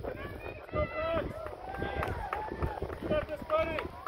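Spectators' voices calling out at a running race, in several short shouts, over a low outdoor rumble.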